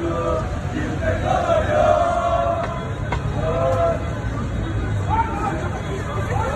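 A crowd of football fans chanting in unison, with long sung notes, over a low rumble of road traffic.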